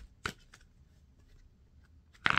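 Tarot cards being shuffled in the hands: two short snaps of the cards, one right at the start and one about a quarter second later.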